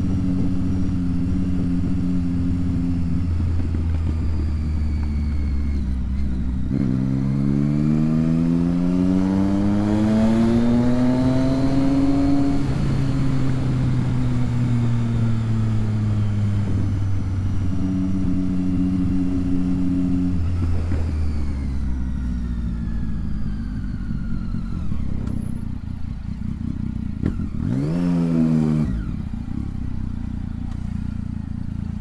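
Triumph Street Triple 675's inline three-cylinder engine running under way. About seven seconds in it pulls up through the revs, then settles back to a steady lower pitch, and near the end it gives a quick rise and fall in revs as the bike slows in traffic.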